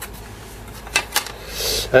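Light handling noises on a metal keyboard case: two small clicks about a second in, then a brief scraping rustle.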